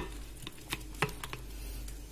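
Metal kitchen tongs picking up pieces of monkfish from a ceramic plate: a few light clicks and taps, spaced irregularly, over a low steady hum.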